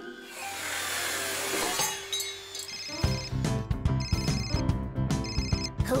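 A telephone ringing in three short trilling bursts about a second apart, from about three seconds in, over cartoon background music. A noisy hiss fills the first couple of seconds before the music starts.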